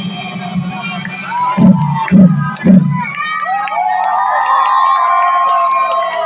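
Sambalpuri folk drums ending the piece with three heavy strokes about a second and a half in, followed by an audience cheering and shouting in high voices.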